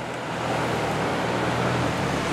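Steady car noise: a low hum under an even rush of noise.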